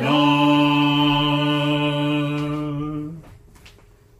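Congregation singing a hymn, holding one long final note that stops about three seconds in.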